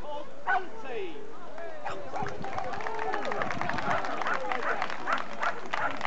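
A dog barking over the chatter of a crowd.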